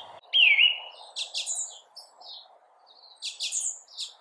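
Songbirds chirping: a short whistled note that dips and rises at the start, then quick bursts of high chirps about a second in and again after three seconds.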